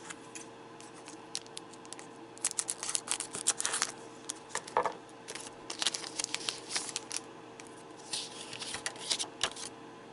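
Foil trading-card booster pack being torn open and crinkled by hand: clusters of quick, sharp crackles. The stack of cards is then drawn out of the wrapper.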